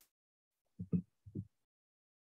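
Near silence, broken a little under a second in by three short, faint, low muffled sounds.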